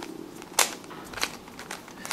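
Plastic Fisher Cube puzzle being twisted by hand: a few sharp clicks and clacks as its layers turn, the loudest about half a second in and another just past a second.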